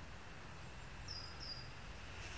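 Two short, high bird calls in quick succession about a second in, each dropping slightly in pitch, over faint, steady outdoor background noise with a low rumble.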